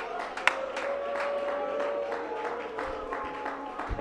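Soft music of long held notes, such as a church keyboard playing under a pause in preaching, with scattered short sharp clicks such as hand claps.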